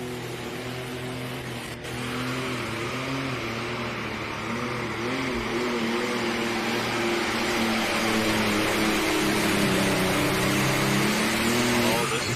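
The diesel engine of a John Deere 4430 pulling tractor running flat out as it hauls the pulling sled. The engine note wavers slightly in pitch and grows louder over the run, with a jump in level about two seconds in.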